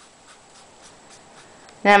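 Felt-tip marker drawing on paper: a series of faint, short scratchy strokes as diagonal crosshatch lines are drawn.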